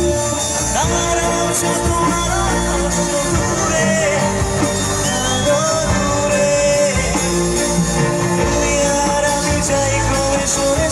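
A live band playing amplified through stage speakers: a male singer singing into a microphone over drums, keyboard and electric guitar.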